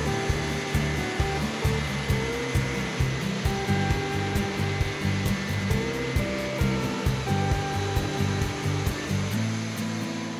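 Background music with a steady beat and held melody notes, over the steady running of a Wood-Mizer LT40 portable band sawmill cutting through a log.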